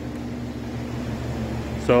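Steady low hum of a running machine, even throughout, with a man's voice starting a word at the very end.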